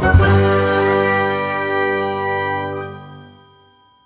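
Musical jingle of an animated segment intro, ending on a struck, bell-like chord that rings on and fades away over about three seconds.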